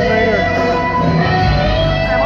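Live R&B band playing on stage, electric guitar to the fore over bass and drums, with some sliding pitches. The sound is loud, dense and reverberant, as picked up from the audience.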